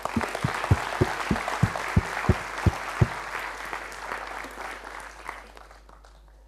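Audience applauding at the end of a lecture, fading away over about five seconds. A steady low thump about three times a second stands out during the first three seconds.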